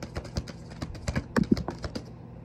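Tarot cards being shuffled by hand: a quick, irregular run of light slaps and clicks, over a faint steady low hum.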